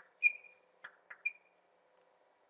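Chalk on a blackboard: two short high squeaks about a second apart, the first the louder, among a few light taps and scrapes as lines are drawn.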